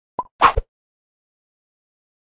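Two quick pop sound effects from an animated title card, the second one louder, both within the first second.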